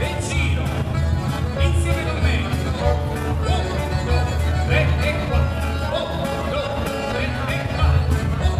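Live band playing a taranta, southern Italian folk dance music, with a diatonic button accordion and a strong steady bass.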